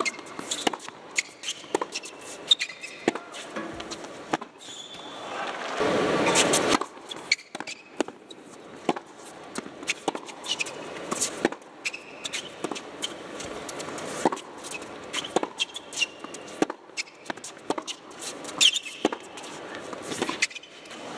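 Tennis being played on an indoor hard court: repeated sharp racket strikes and ball bounces through the rallies, with shoe squeaks on the court surface. A brief crowd reaction swells about six seconds in.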